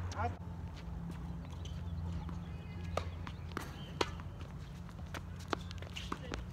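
Tennis ball struck by rackets and bouncing on a hard court during a rally: sharp single pops at irregular gaps of about half a second to a second, the loudest about four seconds in, over a steady low hum.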